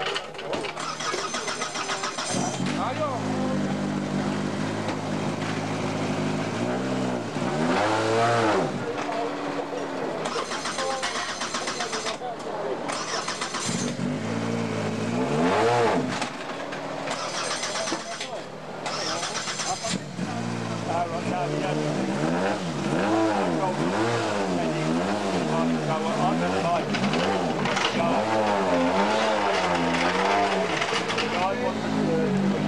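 Skoda Octavia WRC rally car's turbocharged four-cylinder engine idling, blipped once or twice, then revved up and down repeatedly, about once a second, in the last third.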